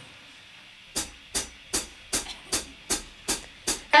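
A drummer counting the band in: after a brief hush, eight even, crisp taps at about two and a half a second, leading into the song.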